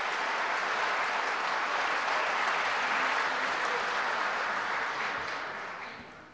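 Applause from a hall full of members of parliament, steady and dense, dying away near the end.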